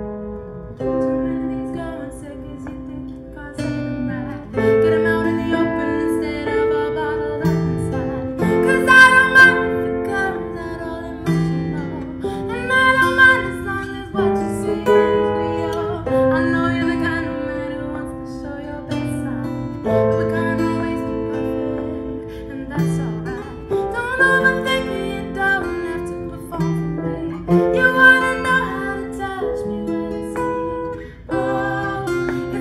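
Grand piano and steel-string acoustic guitar playing a song together, the piano holding chords while the guitar is plucked and strummed.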